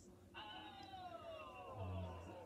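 A single long, high-pitched cry gliding slowly downward in pitch, starting about a third of a second in and lasting about a second and a half.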